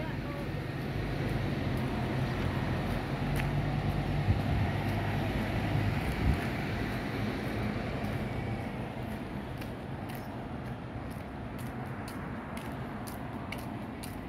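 Street traffic: a car's engine hum and tyre noise that fades away about halfway through, leaving a lower, steady background of city traffic.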